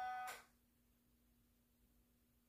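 A guitar chord ringing with steady pitch, cut off short about half a second in. Then near silence with only a faint steady hum.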